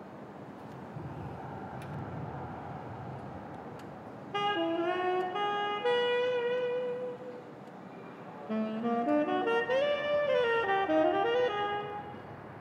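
Low steady background noise, then a saxophone plays a slow melody from about four seconds in: a phrase of long held notes, a short pause, and then a busier run of notes rising and falling near the end.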